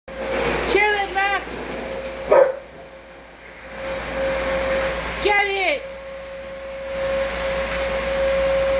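A vacuum cleaner running with a steady whine that grows louder toward the end, while a Rottweiler barks: two short barks about a second in, another soon after, and a longer falling one about five seconds in.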